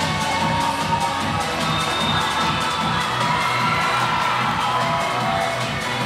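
Upbeat recorded dance music with a steady beat played for a cheerleading routine, with a crowd cheering and shouting over it.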